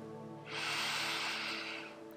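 A woman's deep inhale: one long breath of about a second and a half, starting about half a second in, over soft background music.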